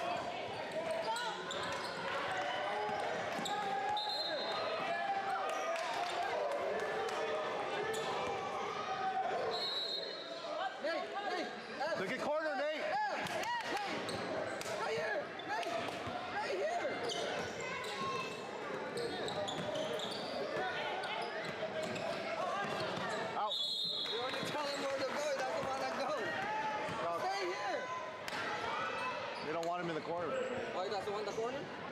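Basketball game sounds echoing in a large gym: a basketball bouncing on the hardwood floor with scattered thuds, a few short high sneaker squeaks, and the indistinct calls of players and onlookers throughout.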